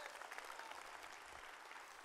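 Congregation applauding lightly and steadily in a large hall.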